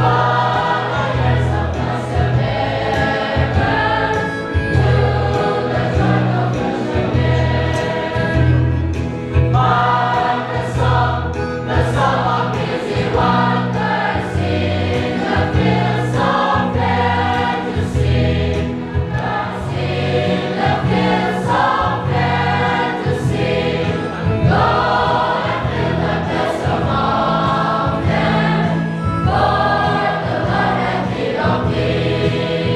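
A church congregation singing a hymn together, many voices as one choir.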